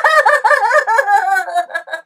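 A high-pitched put-on voice cackling, its pitch wobbling rapidly up and down, trailing off near the end.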